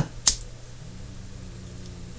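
A short, sharp click just after the speech stops, then a quiet, steady low hum of room tone.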